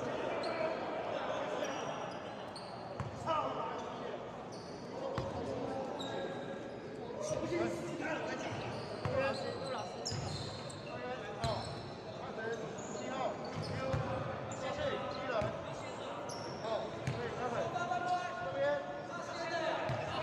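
Basketball bouncing on a hardwood gym court amid players' voices and shouts, with short knocks scattered through.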